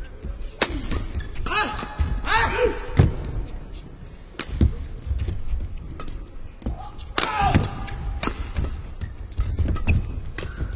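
Badminton rackets striking a shuttlecock back and forth in a fast doubles rally: about eight sharp hits at an irregular pace, some in quick succession, with a few short squeaks between strokes.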